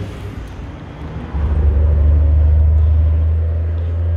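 A low, steady rumble that grows louder about a second in and holds there.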